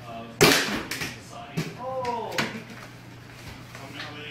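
A wiffle ball is hit with a sudden loud smack about half a second in, the loudest sound, followed by a few lighter knocks as the ball strikes things around the room. A man's voice gives a short exclamation near the middle.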